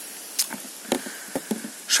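A few light, sharp clicks and taps of metal being handled on a wooden table: a steering shaft with two universal joints being picked up, over a faint background hiss.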